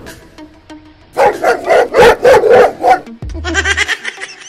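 A dog barking: a loud, rapid string of short barks starting about a second in and lasting about two seconds, the fake angry dog of a box prank going off. Background music runs underneath, and a different edited-in sound with a low hum comes in near the end.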